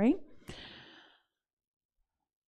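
The end of a woman's spoken word, then a short breathy exhale, like a sigh, which cuts off to silence about a second in.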